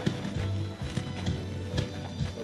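Music with steady, sustained low tones and a few sharp clicks over it.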